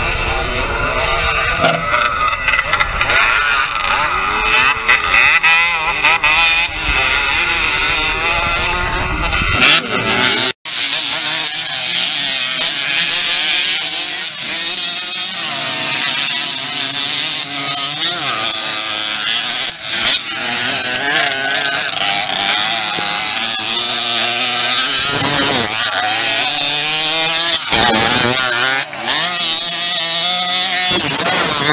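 Several small motorcycles racing around a dirt track, their engines revving up and down, several at once with rising and falling pitch. The sound cuts out for a moment about ten seconds in.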